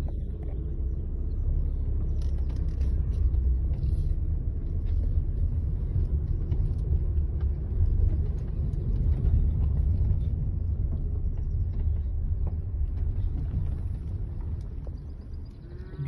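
Steady low rumble of a car moving over a rough track, heard from inside the cabin, with a few faint knocks. It eases off toward the end.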